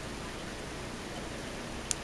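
Room tone: a steady, faint hiss with a single small click near the end.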